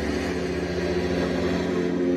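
Live experimental rock band playing a dense, droning passage: several sustained tones held over a noisy wash and a low rumble, steady in level.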